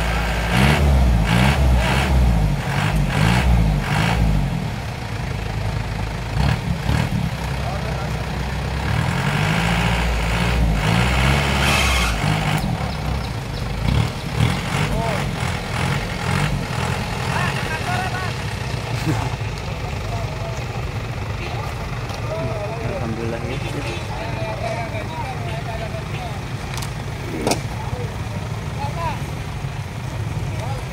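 Vehicle engines at a roadside: a heavy engine runs loudly for about the first twelve seconds, its pitch wavering, with rattling clicks. After that the road noise is steadier and quieter, with scattered voices.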